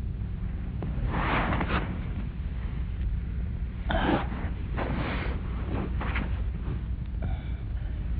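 A man sniffing the air in a series of short noisy sniffs, hunting for a bad smell, over the steady low hum of an old film soundtrack.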